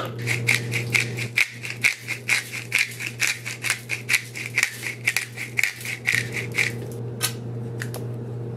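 Pepper grinder being twisted to crack pepper: a quick, even run of gritty clicks, about four a second, which stops near the end with one last click. A steady low hum runs underneath.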